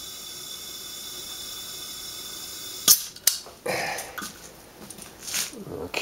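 Compressed air hissing steadily through a leak-down tester into an old Volkswagen engine cylinder that leaks badly, holding only 40 of 100 psi; the owner traces the leak to the exhaust valves. About three seconds in, a sharp snap as the air hose coupling is disconnected cuts the hiss off, followed by a second click and handling noises from the fitting.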